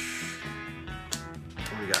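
Background music with steady held notes, with two short clicks in the second half.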